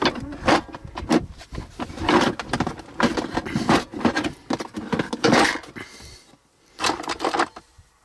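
Rummaging through a clear plastic Flambeau organizer box in a drawer: the plastic box being handled and opened, small tools and tubes inside rattling and clattering in a run of sharp clicks and knocks. It goes quiet near the end.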